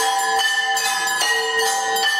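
Temple bell rung continuously, struck about two and a half times a second, each strike ringing on into the next.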